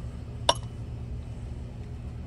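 One sharp metallic click about half a second in, over a steady low hum.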